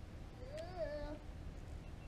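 A single short, drawn-out vocal cry about half a second in, rising and then falling in pitch, over a low background rumble.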